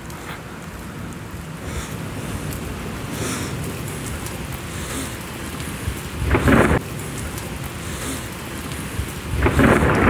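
Rainstorm picked up by a phone's microphone: a steady rush of rain with two louder, short rushing bursts, one about six seconds in and one near the end.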